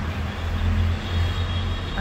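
Steady low rumble of city traffic noise, with no distinct events.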